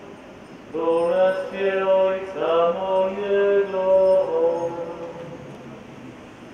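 A man's voice chanting a phrase of the Gospel reading in Polish, on held notes that step from pitch to pitch, for about three and a half seconds beginning just under a second in, then trailing off.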